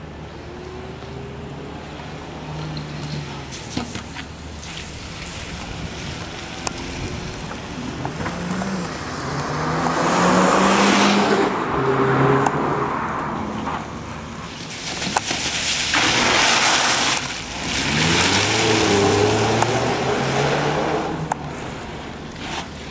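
Audi A1 1.4 TFSI hatchback's four-cylinder turbo petrol engine revving hard and easing off again and again as the car is thrown through tight turns. It gets loudest in two spells, about ten seconds in and again for much of the second half.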